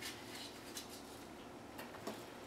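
Faint handling noises: light rustles and a few small clicks as packing foam and a cast-iron lathe chuck are handled, over a faint steady hum.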